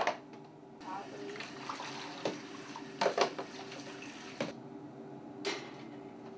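Water running and splashing in a darkroom sink while plastic developing trays are handled, with several sharp knocks of the trays against the sink. The water noise dies away about four and a half seconds in.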